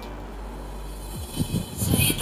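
Low steady rumble and hiss with no voice, broken by a few short falling low whooshes in the second half: an edit-transition sound bed leading into background music.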